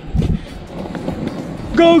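Longboard wheels rolling on asphalt as a steady noise, with wind on the microphone and a couple of low thumps at the start. A shouted "Go!" comes near the end.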